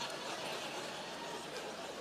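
Audience in a large hall murmuring with scattered soft chuckles, a delayed reaction as people slowly get a joke's punchline.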